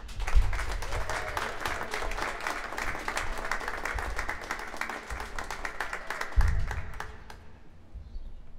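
Audience applauding, a dense patter of clapping that thins out and dies away about seven seconds in, with a couple of low thumps near the start and near the end.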